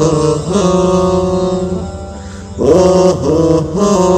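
Wordless musical interlude of a Bangla Islamic gojol: layered voices holding chant-like notes with short slides between pitches, swelling louder about two and a half seconds in.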